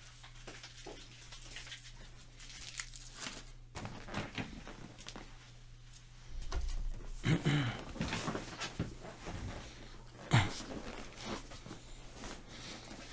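Faint, scattered rustling, handling noises and knocks of someone moving about off-camera, busier in the second half, with a single sharp knock about ten seconds in.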